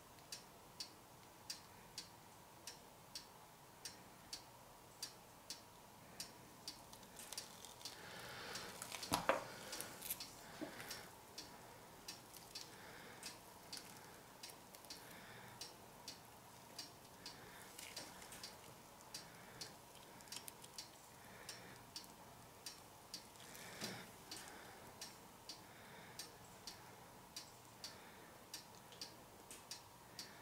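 Faint, steady ticking, about three ticks every two seconds. A louder brief clatter comes about nine seconds in, and a smaller knock near twenty-four seconds.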